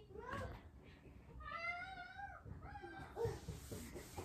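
A faint, high-pitched, wavering call about a second long in the middle, with shorter calls before and after it.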